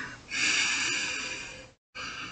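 A man breathing out through his nose close to the microphone: one long hissing exhale lasting about a second and a half, with another breath starting at the very end.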